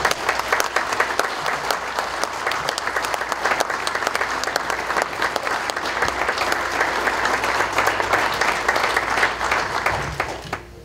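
An audience applauding steadily, many hands clapping at once.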